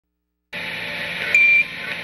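Radio-link hiss from NASA Apollo launch communications audio cuts in half a second in, with one short, high beep about a second later: a Quindar tone, the keying tone that marks a transmission on the mission loop.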